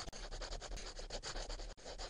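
Sound effect of a pen scribbling on paper: a quick run of short scratchy strokes.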